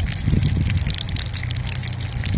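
A whole fish sizzling on a hot griddle pan beside a small wood-burning stove, a steady frying hiss dotted with many small crackles and pops.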